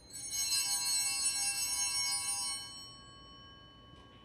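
Altar bells, a cluster of small bells shaken together, jangle for about two and a half seconds and then fade, a few tones ringing on. They are rung as the priest drinks from the chalice at communion.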